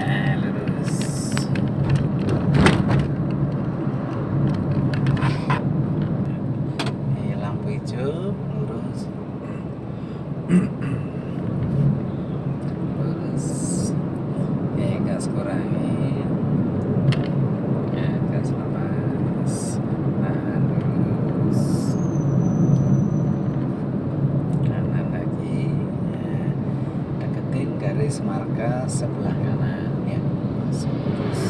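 Steady engine and road noise inside the cabin of an automatic car driving along a road, a constant low hum, with scattered light clicks and one sharp knock about ten seconds in.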